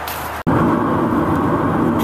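Brief steady outdoor background hiss, then an abrupt cut about half a second in to the steady road and engine noise of a car driving, heard from inside the cabin.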